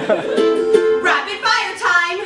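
Ukulele strummed live, accompanying a sung melody.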